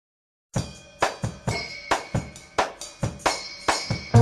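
Drum kit playing the opening beat of a song, starting about half a second in: a steady pattern of kick, snare and hi-hat strikes, about two a second, with no other instruments yet.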